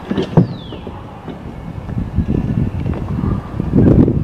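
Wind buffeting the microphone throughout, with one sharp knock about half a second in, followed straight away by a brief falling squeak, and a few softer knocks later on.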